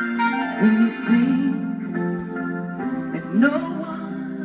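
A woman singing a ballad over instrumental backing, heard from a television's speakers.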